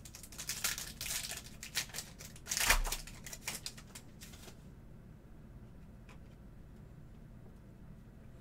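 A foil trading-card pack wrapper being torn open and crinkled, a burst of rustling and crackling over the first four seconds or so, loudest about two and a half seconds in with a low bump. Then only faint handling of the cards.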